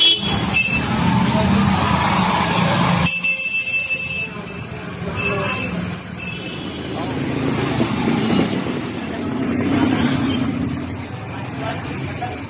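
Motorcycle and scooter engines passing close through a narrow lane, loudest in the first three seconds, with people's voices behind and a high beeping tone that comes and goes.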